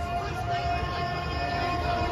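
Show soundtrack played over outdoor loudspeakers: a held chord of several steady tones over a low rumble.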